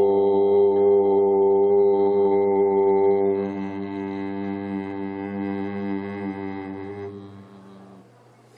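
Voices chanting one long Om together at a steady low pitch. It is loud for the first three seconds, then fades slowly and dies away near the end.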